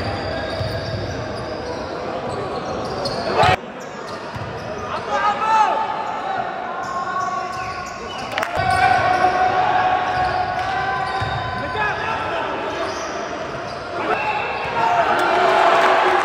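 Game sound of an indoor basketball game: the ball bouncing on the hardwood court under a steady murmur of spectators' voices echoing in the gym. An abrupt edit cut about three and a half seconds in changes the sound, and more cuts follow.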